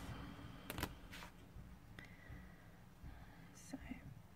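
Quiet handling of sticker paper on a planner page: two short clicks about a second in, a faint scrape near two seconds, and a brief rustle near the end, over a low steady background rumble.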